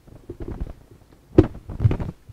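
Microphone being handled: low rumbling and rustling, with a sharp knock about one and a half seconds in and a smaller bump near the end.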